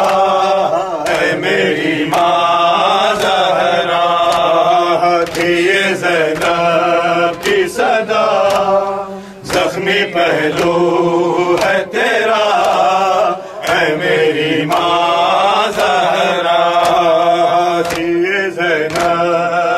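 Male voices chanting a nauha, a lead reciter singing through a microphone, over steady rhythmic open-hand chest-beating (matam), roughly one slap every 0.7 seconds. The chanting drops out briefly about halfway through.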